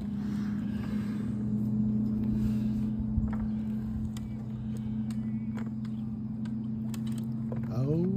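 A steady low electric hum with two pitches, like a small electric motor such as a kayak trolling motor running, with scattered light knocks and clatter as a large bass is worked in and netted beside a kayak.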